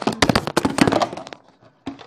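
A clatter of knocks and thuds: a quick run of hard hits for about a second, then a few fainter taps as the object falls and settles.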